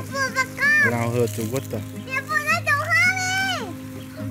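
A young child's high-pitched voice, with drawn-out, gliding calls, over background music with steady low notes.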